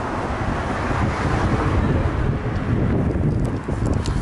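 Wind buffeting the camera microphone, a steady rumbling roar.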